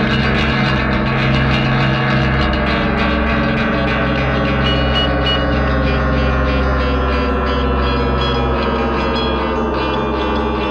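Instrumental band music from a studio session: a dense, sustained wash of electric guitar and other instruments with a gong-like ringing, several tones slowly sliding down in pitch over the second half.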